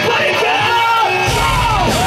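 Live pop-punk band playing loudly, with yelled vocals gliding up and down over distorted guitar; the bass and drums come in heavily a little over a second in.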